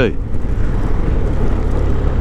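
A motorcycle on the move at road speed: a steady low rumble of engine and wind noise on the rider's microphone.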